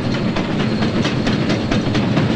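Small steam locomotive running past, a low rumble with a quick, even beat of about four to five strokes a second.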